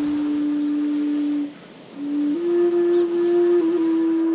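Long, low held notes blown on a homemade flute made from a white plastic pipe: one steady note, a short breath break about a second and a half in, then a slightly higher note held.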